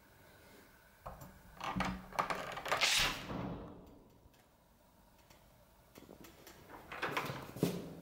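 A front door's lever handle clicks and the door is pulled open, with handling noise and a loud swish about three seconds in. After a short near-silence, soft scattered movement sounds follow near the end.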